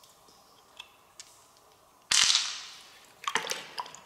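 Wet handling of an opened freshwater mussel: a few soft clicks, then a sudden splash of water about two seconds in that fades over a second, followed by a run of sharp wet squelching clicks as fingers work in the mussel flesh.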